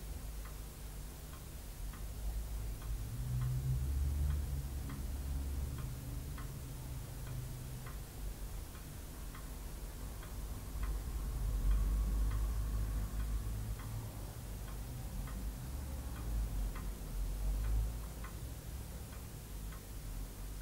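A clock ticking steadily, about two ticks a second, over a low background rumble.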